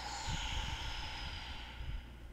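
A long, slow audible exhale close to the microphone, a breathy hiss that tails off near the end.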